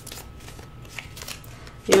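Tarot cards handled and laid on a tabletop: faint soft clicks and slides of card stock as a card is drawn from the deck and set down in the spread.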